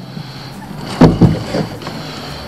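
A painted wooden door being handled: a single heavy thump with a short rattle about a second in, over a low steady background.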